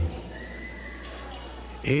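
A pause in a man's speech over a microphone, filled by a steady low electrical hum from the sound system and a faint thin high tone lasting under a second; the voice starts again near the end.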